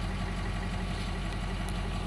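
Ford 6.0L Power Stroke V8 turbo-diesel engine idling steadily, heard from inside the cab.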